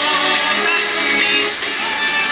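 Live synth-pop band music, loud and steady, with sustained held notes.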